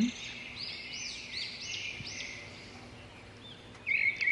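A small songbird singing a quick series of high, arching chirps, about three a second, then falling quiet and chirping again just before the end.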